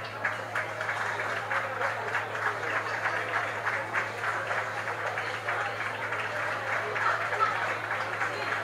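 Audience applauding steadily in an auditorium, a dense patter of many hands clapping at once.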